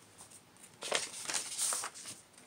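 A paper envelope being handled and torn open by hand: a short cluster of crinkles and small ticks starting about a second in.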